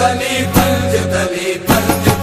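Qawwali music: a sustained harmonium-like drone with sharp hand-drum strikes and voices chanting.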